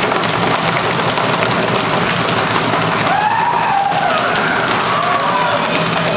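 Many students banging on classroom tables at once, a dense, continuous clatter of knocks, with shouts and a whoop rising over it about halfway through.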